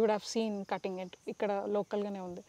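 A woman speaking, over a faint, steady, high-pitched drone of insects such as crickets.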